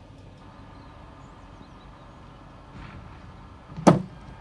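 Quiet steady background, then near the end a single loud thud as a cricket bowling machine fires an off-spin delivery.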